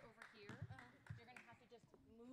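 Faint, indistinct talking, off the microphone, with a few soft low thumps.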